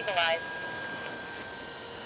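A voice trails off in the first moment, then only a low steady background hiss with a few faint, thin steady tones.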